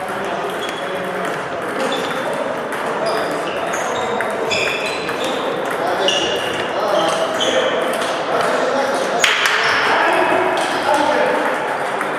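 Many table tennis balls clicking off bats and tables at once, several rallies overlapping in a large, echoing sports hall.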